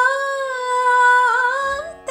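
A woman singing one long held vowel in semi-classical Indian style, with a small ornamental waver past the middle and an upward slide near the end, over a steady drone accompaniment.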